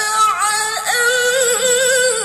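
A teenage girl reciting the Quran in the melodic tilawah style, holding long notes with quick ornamental turns of pitch.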